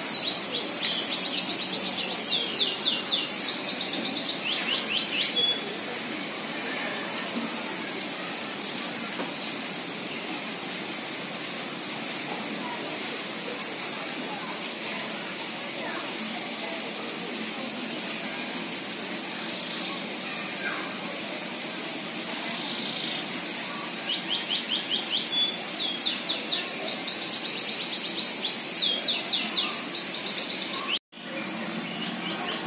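A small bird singing: bouts of fast, repeated high sweeping notes, once in the first five seconds and again from about 23 seconds in, over a steady outdoor background hush.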